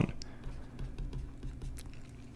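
Stylus on a drawing tablet while writing, giving a few light clicks and taps.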